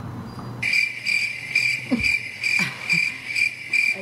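Cricket chirping sound effect, the 'crickets' gag for an awkward silence. It comes in about half a second in as a steady high chirp that pulses about twice a second.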